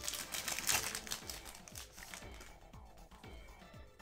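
Foil booster-pack wrapper crinkling and crackling as it is torn open and pulled apart by hand, busiest in the first couple of seconds and then thinning out.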